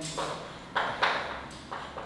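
Chalk tapping and scraping on a blackboard while writing: several sharp, short taps in quick succession.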